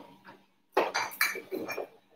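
Dishes and glass clinking: a quick run of sharp clinks lasting about a second, starting a little way in.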